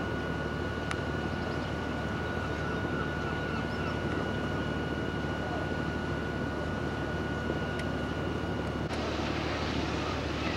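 Steady low drone of a ferry's machinery heard on deck, with a thin, steady high whine over it. About nine seconds in, the whine stops abruptly and the background changes.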